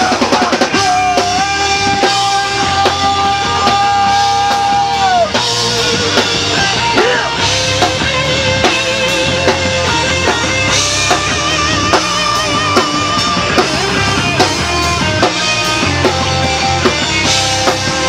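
Heavy rock band playing live: electric guitar over a drum kit, with a long held guitar note in the first few seconds followed by wavering, vibrato-laden held notes.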